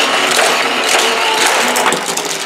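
Hot Wheels motorized loop track set switched on: the battery booster whirs steadily while die-cast cars rattle round the plastic track.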